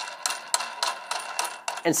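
A quick, irregular run of light clicks from a drill press depth stop dial being turned and handled.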